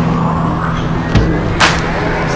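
Electronic dance music between sung lines: a sustained low synth bass with a sharp hit a little past one second in, followed by a rushing whoosh.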